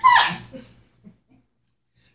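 A woman's voice drawing out the word "and", its pitch falling as it fades, followed by about a second of near silence.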